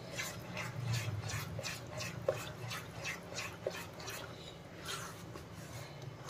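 Spatula stirring and scraping a thick besan barfi paste around a nonstick kadhai: faint, even strokes, about two or three a second.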